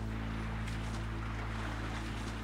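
Steady rush of flowing river water with wind on the microphone, over a low steady hum.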